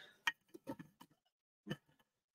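Glass herb storage jars being handled and put back on a wire shelf: a few faint, short taps and clinks, the clearest near the start and shortly before the end.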